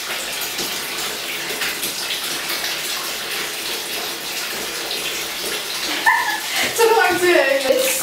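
Bath tap running, a stream of water pouring into a partly filled bathtub with a steady rush.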